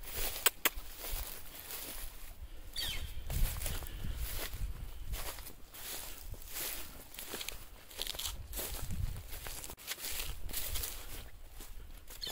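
Footsteps of a person walking through grass and dry weeds, irregular and uneven, with low rumble from the microphone being carried.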